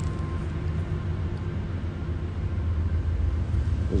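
A steady low rumble of background noise that holds level throughout, with no speech.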